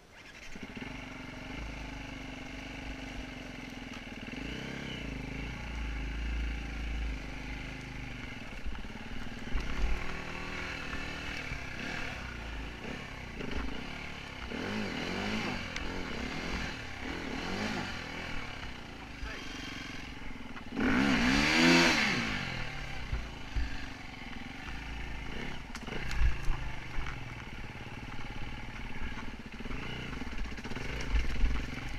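Enduro dirt bike engine running and revving up and down as it is ridden over rough trail, with the loudest rev about three quarters of the way through.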